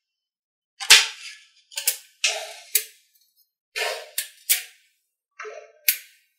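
Small neodymium magnetic balls clicking sharply as blocks of them are snapped into place on a model. The clicks come in about five short bursts, the loudest about a second in.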